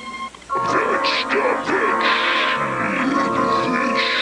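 Turntable scratching: a record sample dragged back and forth by hand in quick strokes that sweep up and down in pitch, over a music bed of sustained tones. The music drops out briefly just after the start and the new scratch passage comes in about half a second in.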